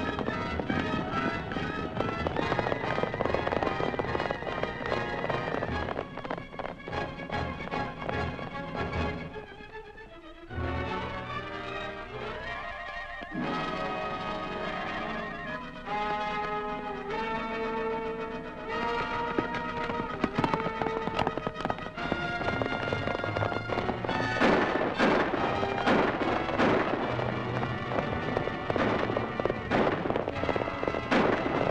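Dramatic orchestral film-serial score, with volleys of sharp gunshots in the first several seconds and again near the end.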